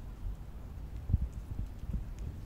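A cat eating dry kibble: irregular low knocks and crunches of chewing, with the loudest thump just over a second in.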